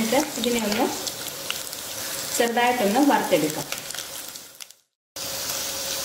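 Chopped coconut bits sizzling in hot oil in a pan, stirred with a spatula, with crackles through the hiss. A low voice sounds briefly, twice. The sound cuts out for a moment near the end, then the frying resumes.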